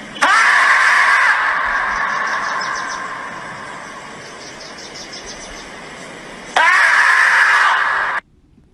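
A marmot standing upright and screaming: a long, loud scream that starts abruptly with a brief rising sweep and fades slowly over about four seconds, then a second scream that starts suddenly near the end.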